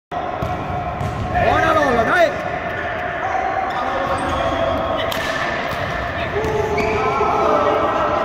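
Futsal being played on a hard indoor court: the ball being kicked and bouncing on the floor, with players calling out in the hall. A sharp knock comes about five seconds in.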